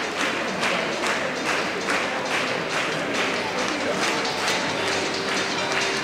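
Audience clapping in time, about two claps a second, over crowd murmur in a large hall. A faint held tone comes in near the end.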